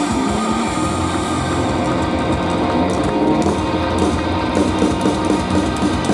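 Live rock band playing loud: electric guitar, bass guitar and drum kit together, with frequent drum hits.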